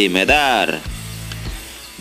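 Background music under narration: a spoken word trails off early on, then the music carries on quietly with a low steady bass.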